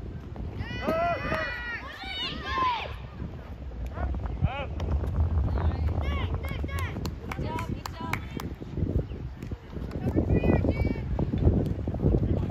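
Spectators and players shouting and cheering during a youth baseball play, in high, excited voices with no clear words. Scattered claps run through the middle. A steady low wind rumble sits on the microphone throughout.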